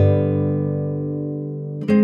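Slow instrumental guitar music: a chord struck right at the start rings and slowly fades, and a second chord is struck just before the end.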